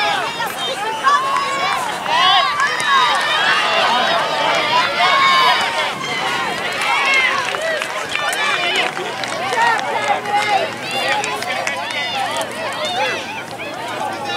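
Many overlapping voices shouting and calling during a youth soccer game, continuous and loud with no distinct words.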